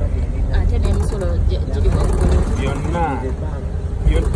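Steady low rumble of a moving vehicle heard from inside the cabin, with voices talking over it.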